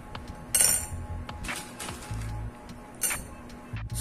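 Small pebbles being set down on a ceramic saucer and teacup, a few sharp clinks of stone on china, the loudest about half a second in.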